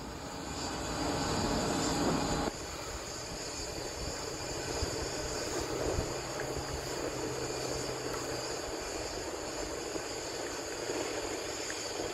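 A steady rushing background noise, louder for the first two and a half seconds, then dropping suddenly to a lower, even level.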